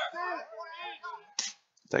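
Soft, untranscribed men's talk, then a brief near-silent pause before louder speech starts at the very end.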